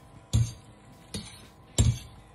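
A pasta server knocking three times against a stainless steel frying pan while spaghetti is tossed in sauce: sharp strikes about a third of a second in, just past a second, and near the end, over quiet background music.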